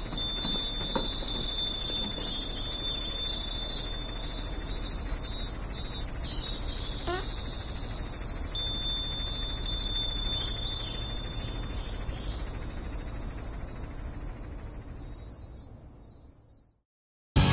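Steady, high-pitched insect chorus of continuous buzzing trills, with a thinner steady tone that comes and goes beneath it. It fades out over the last few seconds.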